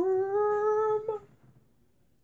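A man's voice humming one long note that slides slowly upward in pitch, then breaks off about a second in with a short upward flick.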